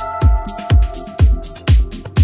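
Melodic techno/progressive house dance music: a deep four-on-the-floor kick drum about twice a second (around 120 bpm) with hi-hats between the beats. A held synth chord fades out a little past the middle.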